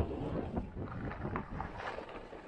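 Skis sliding and scraping on snow, with wind buffeting the microphone; the noise eases off toward the end.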